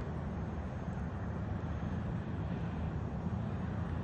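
Small electric RC foam-board trainer with a brushless motor and 6x4 propeller, flying at a distance: its motor and propeller are faintly heard running steadily over a steady low outdoor rumble.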